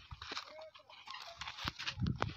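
Scuffing and footsteps on dry sandy ground around a sheep, with a short, faint animal call about a third of a second in.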